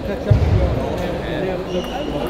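A single dull, low thump about a third of a second in, over the chatter of voices in a large hall.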